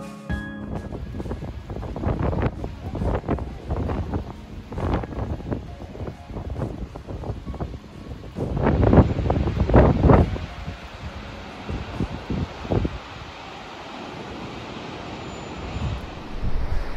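Wind buffeting the microphone in irregular gusts that rise and fall, strongest a little past the middle.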